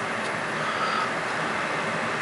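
Steady, even background hiss of room noise, with no distinct event.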